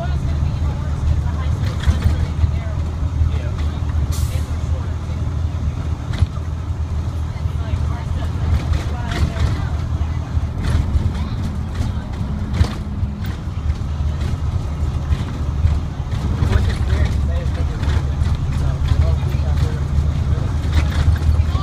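Diesel engine of a 2006 IC CE300 school bus, an International DT466E, running steadily at cruising speed, heard from inside the bus, with a low even drone and occasional sharp clicks.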